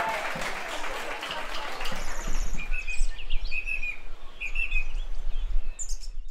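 Birds chirping in short repeated calls from about two seconds in, over a steady low rumble.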